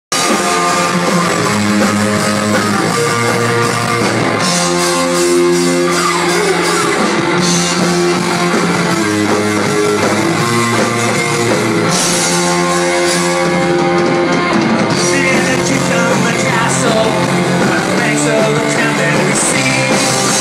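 A rock band playing loud and live: electric guitar chords changing every second or two over bass and drums, with stretches of cymbal wash, and a singer's voice.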